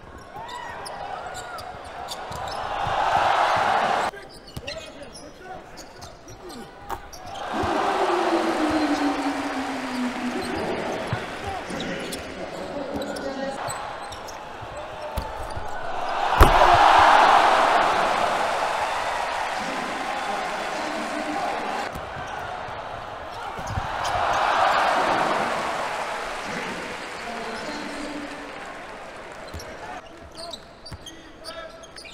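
Basketball arena game sound: crowd noise swells and fades several times over a ball bouncing on the hardwood court. A sharp bang about halfway through is followed by the loudest swell of crowd noise.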